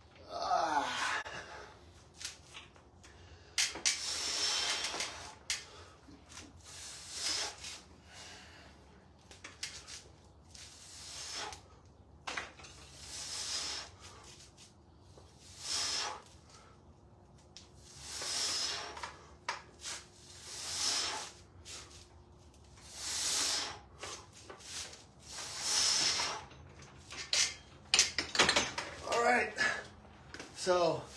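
A man breathing hard through a set of barbell bench press reps: a sharp, noisy exhale with each rep, about every two to three seconds.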